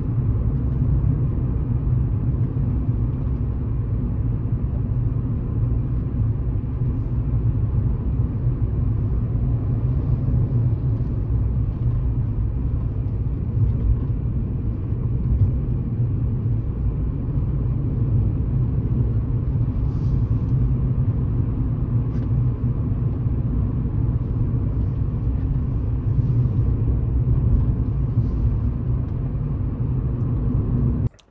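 Car driving along a road, heard from inside the cabin: a steady low rumble of tyres and engine.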